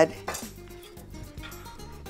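Knife blade scraping and tapping on a wooden cutting board as diced raw fish is gathered up, over faint background music.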